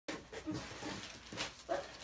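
A cardboard box being cut and opened by hand: a few short knocks and rustles of cardboard, with a brief faint pitched sound near the end.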